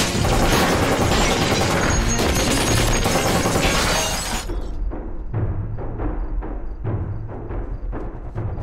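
Glassware shattering in a burst of rapid crashes under a loud dramatic action score. After about four and a half seconds the crashing stops and the score carries on with regular low, drum-like pulses.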